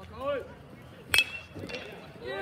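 A metal baseball bat hits a pitched ball about a second in: one sharp ping with a brief metallic ring.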